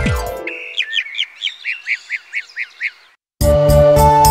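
Cartoon bird-chirp sound effect: a rapid run of about ten short, high, falling chirps that grows fainter. About three and a half seconds in, keyboard music begins.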